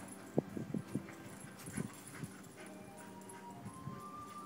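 A boxer puppy giving a run of short, sharp barks, the loudest about half a second in, with a few more spaced over the next three seconds. Faint music comes in near the end.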